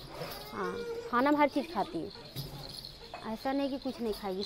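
A man speaking Hindi in three short phrases with pauses between them.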